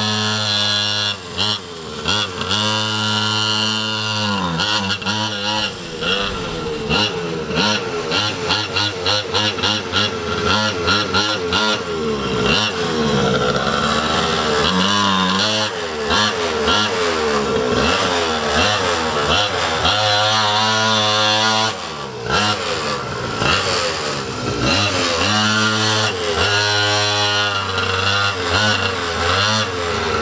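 Small single-cylinder two-stroke engine of a mini quad (pocket ATV) running under a rider, its revs repeatedly rising and falling as the throttle is opened and closed.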